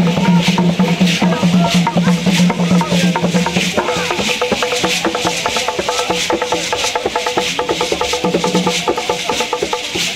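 Live Bamiléké Kougang dance music: wooden drums and shaken rattles keep a fast, steady rhythm with dense clattering strikes. A sustained low tone sounds through the first few seconds, then becomes intermittent.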